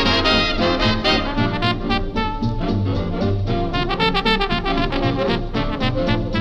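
Instrumental swing big-band jazz with a brass section of trumpets and trombones playing over a steady, evenly pulsing beat.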